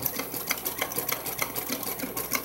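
AlphaSew PW200-ZZ walking-foot zigzag lockstitch machine sewing a full-width zigzag stitch, its needle and feed mechanism clicking in a quick, steady rhythm.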